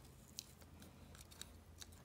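A few faint small clicks and scrapes of a metal dental pick against a plastic ECU harness connector as it pries at the connector's red locking piece.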